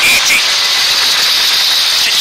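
Ford Escort Mk2 rally car with its four-cylinder Pinto engine running hard at speed, heard inside the cabin as a loud, steady wash of engine, tyre and wind noise.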